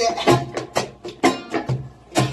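Acoustic guitar strummed in a choppy reggae rhythm, with sharp strokes about twice a second.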